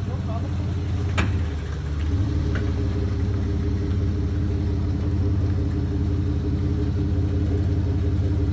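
Steady low hum of an idling vehicle engine, with a single sharp click about a second in.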